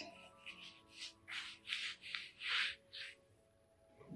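A hand rubbing and pressing a fabric knee-massager strap on the leg, about six short scuffs, with faint background music underneath.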